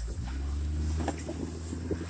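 Steady low rumble of a Kawasaki Mule Pro FXT side-by-side's three-cylinder engine pulling a towed sled through snow, mixed with wind noise on the microphone.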